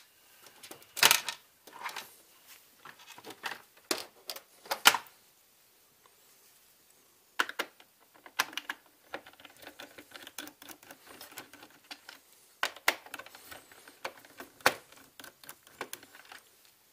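Irregular clicks and light knocks of a screwdriver and hands on a robot vacuum's plastic top cover as its screws are undone. The clicks come in clusters, with a quiet pause of about two seconds a third of the way in.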